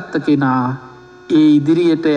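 A man's voice preaching in Sinhala, with a short pause about a second in, over a faint steady hum.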